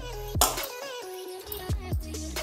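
Background music: a beat with repeated falling bass notes and a melody over it, the bass dropping out briefly in the middle.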